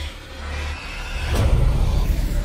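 Trailer sound design: a deep low rumble that dips briefly, then swells, with a sharp hit about one and a half seconds in.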